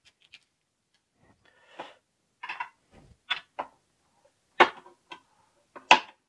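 Irregular sharp clicks and light knocks of hard plastic parts being handled and fitted together, as a rod holder is pressed onto the side of a hard plastic tackle box; the loudest clicks come in the second half.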